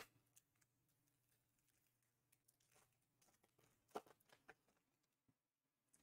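Near silence, with a brief tap and two fainter ones of trading cards being handled about four seconds in.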